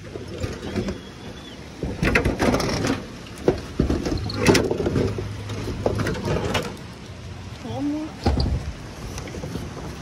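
Footsteps in rubber slippers on corrugated metal roofing sheets, the sheets clanking and rattling under each step in several irregular loud bursts. A brief voice-like sound comes just before the last burst.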